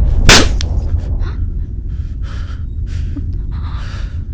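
A sharp slap across a woman's face, followed by a steady low rumble and several short gasping breaths.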